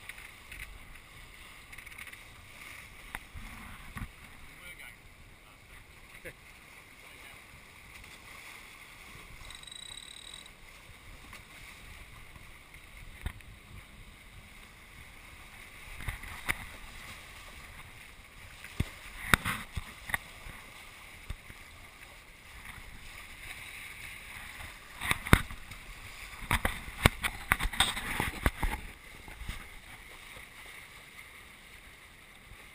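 F-22 trimaran sailing under spinnaker, a steady rush of water and wind on the microphone, with sharp knocks and clatters from the boat in the last few seconds.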